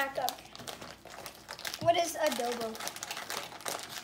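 Plastic snack wrapper crinkling as it is handled, in short crackles throughout, with a child's voice about two seconds in.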